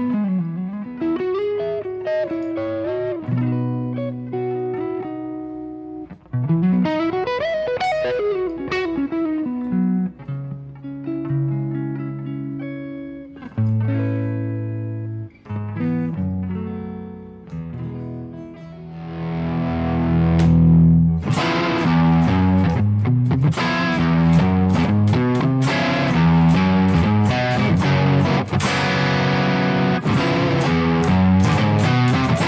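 PRS S2 Vela electric guitar played solo: bent and sliding single-note lines in a lighter tone, then from a little past halfway a louder distorted tone with fast, tightly picked riffs.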